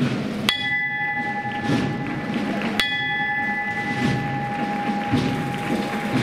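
A bell struck twice, about two seconds apart, each stroke ringing on with a clear steady tone.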